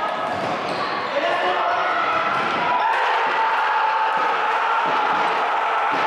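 Indoor futsal match in a sports hall: players and spectators shouting over one another, with thuds of the ball on the court.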